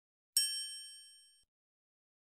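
A single bright, bell-like ding from a logo-animation sound effect. It strikes about a third of a second in and fades out over about a second.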